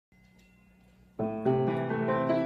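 Grand piano being played: after about a second of faint room hum, the piece starts suddenly with chords, a louder chord following close behind.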